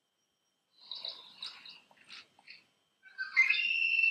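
Male red-winged blackbird calling, played back through a computer's speaker: a few short chattering calls about a second in, then a louder song starting near the end, ending on a rising, held note.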